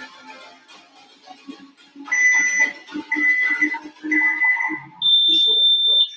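Workout interval timer counting down: three short beeps about a second apart, then one longer, higher-pitched beep marking the end of the exercise interval. Faint background music plays underneath.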